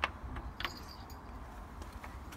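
Two sharp light clicks, the second about two-thirds of a second in and followed by a brief high metallic jingle, with a few faint ticks and low handling rumble.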